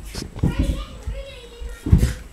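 Children's voices and chatter in the background, with a few low thuds, the loudest near the end.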